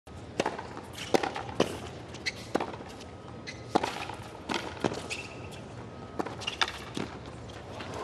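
Tennis rally on a hard court: a serve and then a string of sharp racquet-on-ball pops and ball bounces, roughly one every half second to second. A couple of brief high shoe squeaks come around the middle.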